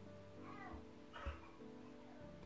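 Two faint, short cat meows, under quiet background music.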